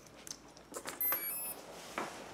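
Clicks of an XT60 battery connector being plugged into a brushless ESC, then a short run of high power-up beeps from the ESC through the motor about a second in. The ESC gets no throttle signal from the receiver's channel 3 and does not arm.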